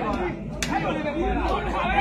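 Several people talking and calling out over one another, with one sharp crack about half a second in from a foot striking the sepak takraw ball.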